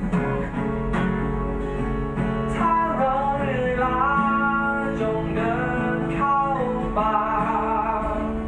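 Two acoustic guitars playing together, strummed and picked chords, with a voice singing long held notes over them from about two and a half seconds in.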